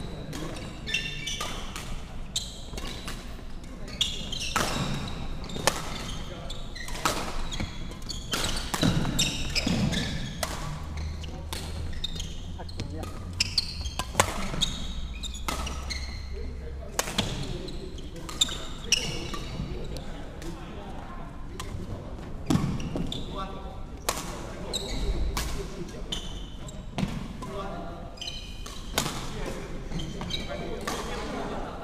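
Badminton rally in a large, echoing sports hall: sharp racket strikes on the shuttlecock every second or so, with shoes squeaking on the wooden court floor.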